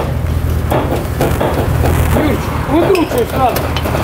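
Knocks and clanks from a GAZ-69 rolling down metal loading ramps off a truck, over a steady low hum. Short voice calls come near the end.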